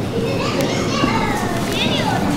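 Spectators' voices at a live grappling match: a steady crowd murmur with several short, high-pitched shouts and calls, one about half a second in and another near the end.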